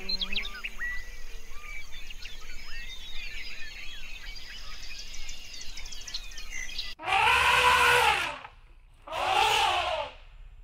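Many small birds chirping and calling, with short high whistled notes. About seven seconds in the sound cuts abruptly to two loud calls, each rising then falling in pitch.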